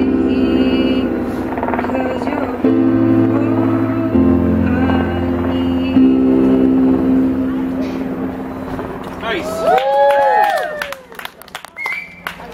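Electronic keyboard playing held chords with a piano sound, changing every couple of seconds and ending about ten seconds in. Then come clapping and whooping cheers.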